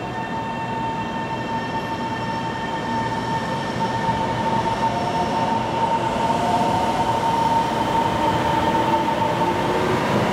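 Taiwan Railway EMU700 electric multiple unit pulling in alongside the platform, its running noise growing louder as it comes close. A steady high-pitched electrical whine sounds throughout.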